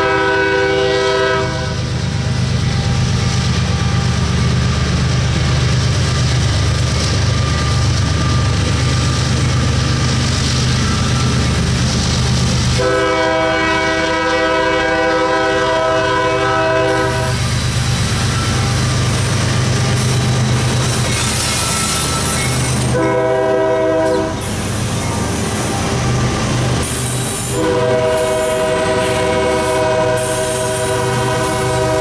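GE diesel freight locomotives' air horn sounding a grade-crossing pattern: the tail of one long blast at the start, a long blast about halfway through, a short blast a few seconds later, and another long blast near the end. Under the horn is the steady drone of the diesel engines as the lead units pass close by, with rattling wheel-and-rail noise building in the second half.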